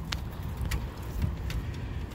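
Footsteps of a walker and a dog crossing a grated footbridge deck, with a few short sharp clicks over a steady low rumble.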